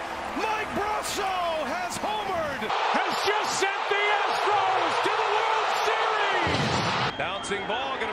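Excited voices shouting. About three seconds in, a large stadium crowd roars and cheers for about four seconds, then cuts off abruptly at an edit.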